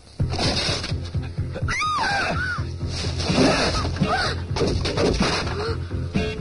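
A sudden loud burst of dramatic film music, mixed with crackling and sparking sound effects of an electric shock from power-line cables.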